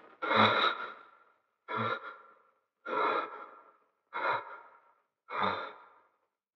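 A man breathing heavily in deep, sighing breaths, five of them about a second apart, each fading away quickly.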